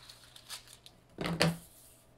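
Gold metallic hot-foil sheet being cut with scissors and handled, with faint small crackles of the foil. There is a louder crinkle a little past a second in.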